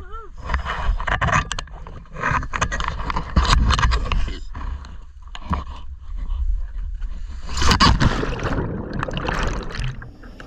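Seawater splashing and sloshing in rough bursts over a low rumble as a scuba diver goes from the boat into the sea, with the loudest gush of water about eight seconds in.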